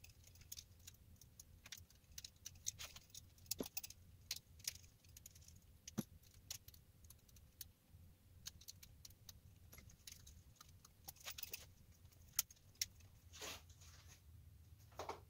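Faint clicking and clinking of small brass lamp-socket parts being handled and fitted together onto the lamp's brass arm, with a sharper click near the end.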